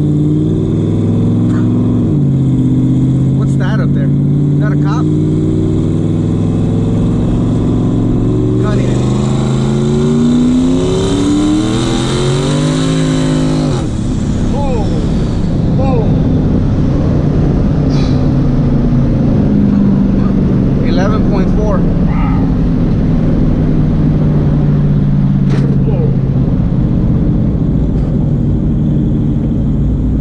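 Turbocharged Ford Coyote 5.0 V8 heard from inside the Mustang's cabin making a wide-open-throttle pull in third gear on boost: after a steadier stretch, the engine note climbs steadily for about six seconds with a rising turbo hiss over it, then drops abruptly as the driver comes off the throttle, the hiss trailing off just after. The engine then settles to a lower, steadier note.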